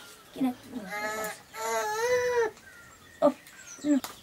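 A high-pitched voice gives a short call, then a drawn-out wavering call of about a second in the middle. A single sharp click comes about three seconds in.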